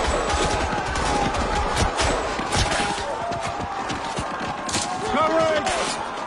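Movie-soundtrack gunfire in a firefight: repeated rifle and machine-gun shots at irregular intervals, with a shouted voice about five seconds in.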